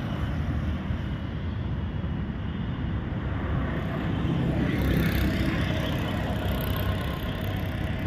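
Road traffic running past close by: a steady low engine rumble and tyre noise, swelling a little about five seconds in.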